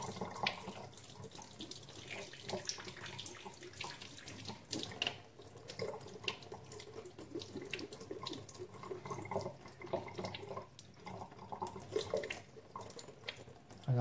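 A kitchen tap runs into the sink, the stream splashing unevenly as a hand is held under it to feel whether the water has turned lukewarm yet.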